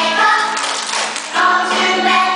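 A choir of young children singing together: one sung phrase, a brief pause, then the next phrase beginning about a second and a half in, over a steady held accompanying note.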